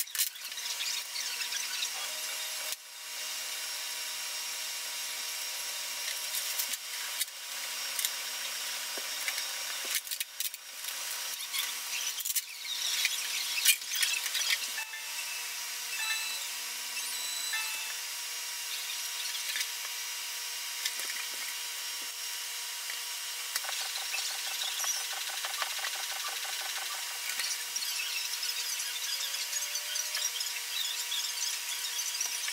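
A sock-covered trim iron rubbed over heat-shrink model-airplane covering film: a steady scratchy rubbing with a few sharper clicks and scrapes about ten to fifteen seconds in.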